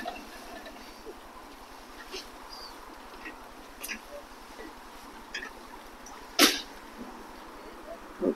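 Faint open-air background with a few light clicks and one short, sharp noise about six and a half seconds in.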